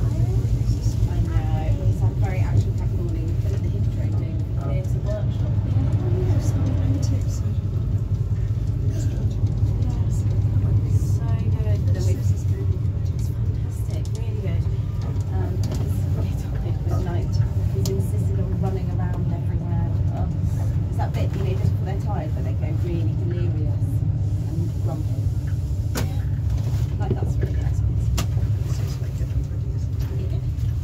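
Steady low rumble of a diesel-hauled passenger train running at speed, heard from inside a coach, with indistinct passenger voices over it.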